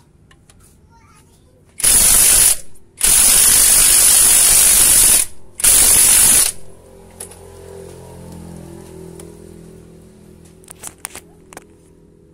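Pneumatic impact wrench running in three loud bursts, the middle one about two seconds long, turning the threaded plunger of a homemade grease pump to force oil through a clogged grease nipple on a truck axle. A low hum and a few light clicks follow.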